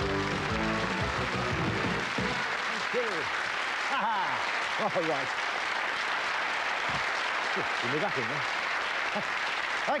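A game-show theme tune ends about two seconds in, and studio audience applause carries on steadily through the rest, with a man's voice briefly speaking over it.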